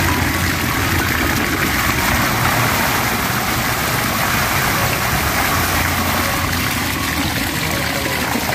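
Water gushing steadily out of a bamboo pipe and splashing onto a mesh net stretched on a bamboo frame.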